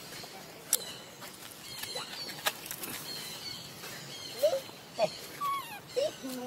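Outdoor forest ambience with faint high chirps and a few sharp clicks; near the end come several short squeaky calls that slide up and down in pitch.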